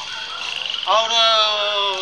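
A man's voice holding one long, drawn-out word that falls slightly in pitch, after a brief rapid rattling pulse just before it.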